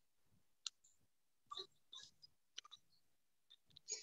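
Near silence broken by a few faint, scattered clicks.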